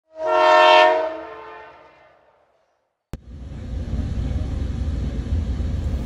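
A train horn blows once for about a second and dies away. After a brief silence, the steady low rumble of a moving train starts suddenly.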